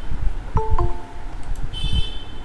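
Google Meet notification chime: two short tones about half a second in, the second lower than the first, sounding for a participant's request to join the call. Near the end comes a brief high buzzing tone.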